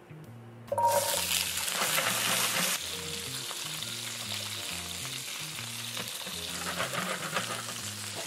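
Okra pods dropped into hot oil in a frying pan: a loud sizzle breaks out about a second in, then settles into a steadier, quieter frying sizzle as the pods are moved around with a spatula.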